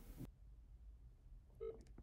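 Near silence, broken by one short electronic telephone tone about one and a half seconds in, as a smartphone places a call.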